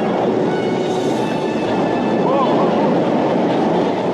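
Storm sound effects: a steady, loud noise of wind, rain and heavy waves against a wooden boat.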